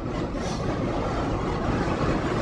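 Oil furnace burner firing steadily, a continuous rushing drone of the burner and flame, with its fuel pump turned down to 75 psi.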